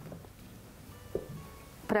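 Faint background music with plucked guitar, and one soft knock about a second in.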